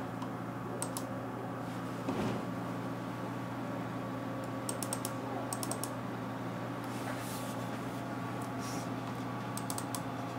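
Short runs of quick clicks from a computer being operated by hand, a few clicks at a time: about a second in, two groups around the middle, and again near the end. A steady low hum runs underneath.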